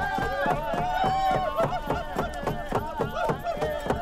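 Several men chanting in a Native American style over a steady beat of hand-held frame drums, about four strokes a second.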